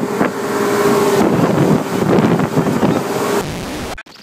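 A boat's motor running with a steady whine, drowned in wind buffeting the microphone. It eases off somewhat near the end.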